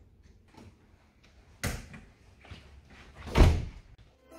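A hotel room door being pulled shut: a sharp knock about one and a half seconds in, then the door closing with a heavy thud near the end.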